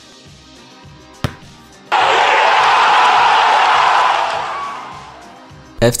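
Transition sound effect in an edited video: a quiet music bed with two sharp clicks, then a sudden loud rush of noise that holds for about two seconds and fades away.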